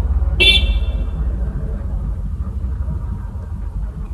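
A short vehicle horn toot about half a second in, over a steady low rumble.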